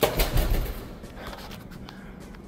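Handheld camera jostled while walking on a hard floor: a quick cluster of knocks and thuds in the first half second, then a steady low hum.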